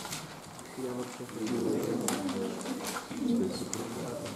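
A pigeon cooing: a few drawn-out, low, fairly level coos in separate phrases, starting about a second in.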